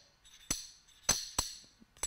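A loose-fitting steel AR-15 gas block clicking against the barrel as it is handled and turned on the journal: a few sharp metallic clicks with a brief ring, one about half a second in and two close together a little past one second. The clicks come from the play of a gas block that is too loose on the barrel, which can bleed gas.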